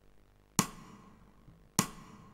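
Two sharp drum hits a little over a second apart, each ringing out briefly: the sparse percussion opening of a rock song before the band comes in.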